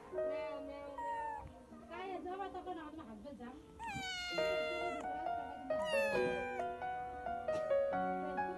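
Kitten meowing twice, about four and then six seconds in, each meow loud and falling in pitch, over background music.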